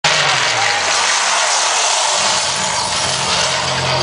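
Loud, dense wash of club sound from a live DJ set, recorded on a phone, hiss-like and without clear beats. A low steady tone comes in about three seconds in.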